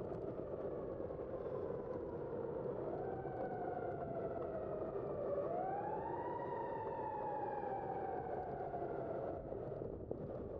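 An emergency-vehicle siren wailing over steady wind and road noise from the moving bicycle: its tone rises a little about three seconds in, then rises sharply around five seconds in and falls slowly before fading near the end.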